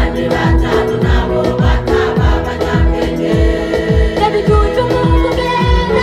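Church choir singing a Kirundi gospel song through microphones, women's voices leading, over a steady bass drum beat about twice a second.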